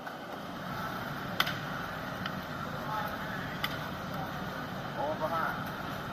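Steady background hiss with a few sharp smacks, one about a second and a half in and another around three and a half seconds, and a brief distant voice near the end.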